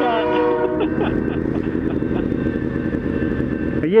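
Freight train horn holding a steady chord that cuts off about a second in, then the steady rumble and clatter of the freight train rolling past, with motorcycle engines idling underneath.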